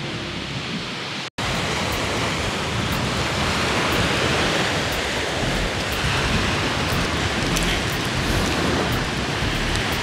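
Steady rushing of wind and waves breaking on a beach, loud and unbroken. About a second in it cuts out for an instant, then resumes.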